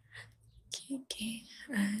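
A woman's quiet, half-whispered speech, with her voice picking up near the end.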